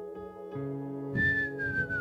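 A man's single falling whistle, about a second long with breath in it, near the end, like a cartoon sleeper's snore-whistle. It plays over a soft sustained keyboard pad that changes chord about half a second in.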